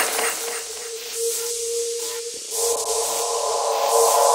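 Intro of a trap metal instrumental beat: one held synth tone over a hissing, distorted noise layer, with more tones stacking in about two-thirds of the way through as it grows louder.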